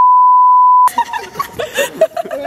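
Editor's censor bleep: one steady, loud, high-pitched beep lasting about a second that replaces all other sound over a shouted exclamation.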